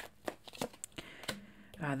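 A tarot deck being shuffled by hand, a quick run of soft card flicks and clicks; a voice comes in near the end.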